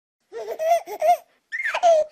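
A baby laughing: a few quick high-pitched laughs in the first second, then a longer squeal that falls in pitch near the end.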